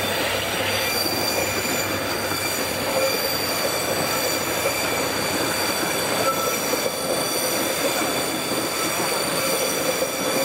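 Taiwan Railways Taroko Express electric multiple unit running along the track, heard from on the train: steady rolling noise with several thin, steady high-pitched tones over it as the train rounds a curve.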